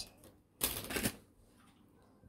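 A brief scratchy rustle of thin jewellery wire being handled as a length is cut off with cutters, lasting about half a second with two quick peaks, a little over half a second in.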